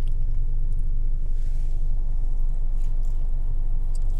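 Steady low rumble of a car's idling engine heard inside the cabin, with a few faint clicks over it.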